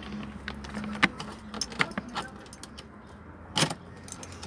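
A bunch of car keys on a ring jangling and clicking as they are handled at the ignition, with a sharp clink about a second in and a louder clatter near the end. A low steady hum lies under it for the first second and a half.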